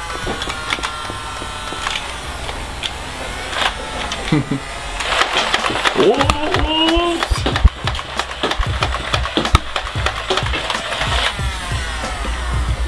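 Battery-powered Nerf Rapidstrike CS-18 blaster running: its motor whines steadily, then it fires a rapid string of sharp clacking dart shots from about five seconds in, emptying the clip, with laughter in between.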